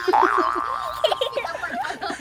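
A cartoon 'boing' sound effect: a twangy rising glide, the last of a quick series, right at the start.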